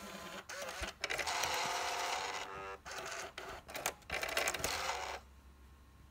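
Nakamichi CD-700II car CD player's disc mechanism loading a CD. Clicks and clunks alternate with stretches of motor whirring, one with a short whine, and all of it stops about five seconds in, once the unit has read the disc and shows a track.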